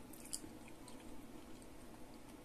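Faint chewing of a mouthful of soft white bread spread with creamy requeijão.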